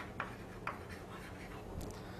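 A few faint chalk taps and short scratches on a chalkboard as the teacher writes.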